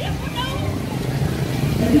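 A motorbike engine running close by as it passes, growing louder toward the end, with people's voices over it.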